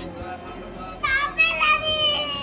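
A young child's high-pitched voice, calling or squealing with sliding pitch, starting about a second in.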